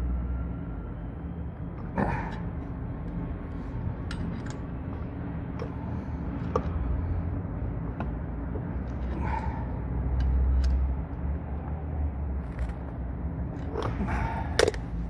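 A Yellow Jacket pinch-off tool being cranked tight on a copper refrigerant line, giving scattered small metallic clicks and ticks over a steady low machinery hum. The hum swells briefly about two-thirds of the way through.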